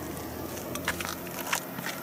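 Parachute canopy fabric rustling and crinkling as it is handled and laid flat, with a few soft crackles about a second in and again around a second and a half.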